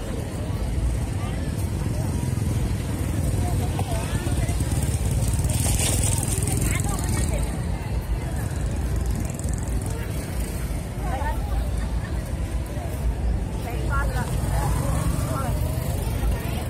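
Busy night street ambience: a steady low rumble of road traffic and motorbikes under the scattered chatter of a crowd walking among market stalls.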